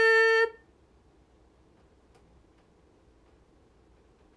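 A young woman's voice holding a long, level "aruー" that cuts off about half a second in. Faint room tone with a few small clicks follows.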